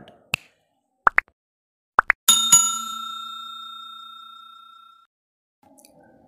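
A bell-like ding sound effect: a few quick pips, then one bright chime about two seconds in that rings on and fades away over roughly three seconds.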